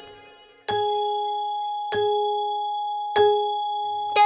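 A clock chime struck three times, about a second and a quarter apart, each stroke ringing on and fading slowly: the clock striking three o'clock.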